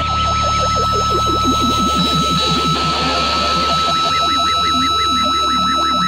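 Experimental effects-pedal music: an instrument run through a Carcosa Fuzz, a Digitech Ventura Vibe and a TC Electronic Skysurfer Reverb. A high drone is held under rapidly repeating swooping warbles of pitch. A low drone drops out about two seconds in, and the warbles move higher in pitch about four seconds in.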